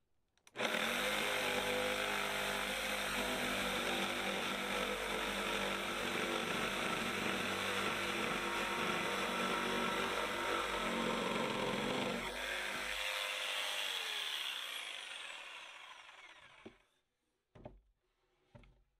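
Bosch 7-amp jigsaw with a long blade cutting a curve through the end of a thick timber beam. It runs steadily for about twelve seconds, then falls in pitch and fades as the motor winds down and stops, leaving a few faint clicks near the end.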